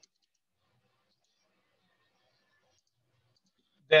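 Near silence, with a voice starting right at the end.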